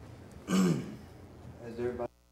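A man clearing his throat into a handheld microphone, twice: a louder rough burst about half a second in and a shorter one near the end, over a low steady room hum.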